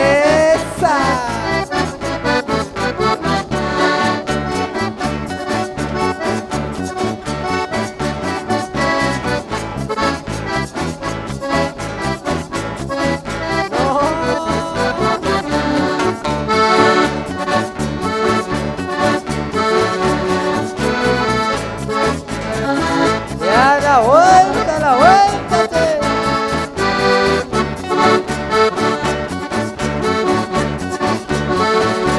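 Instrumental Argentine folk valsecito (little waltz) led by accordion over a steady, regular beat, with no singing. A run of sliding, bending notes comes about three-quarters of the way through.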